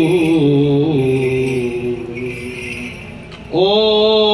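Byzantine chant: male voices sing a slow, ornamented line on long held notes, fading off past the middle, then a new phrase comes in loudly near the end. Under the voices is the jingling of the small bells on a swinging censer.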